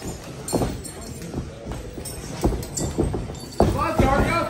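A few separate hollow thuds of wrestlers' boots landing on a wrestling ring's canvas and boards, over a murmuring crowd; near the end a voice shouts out.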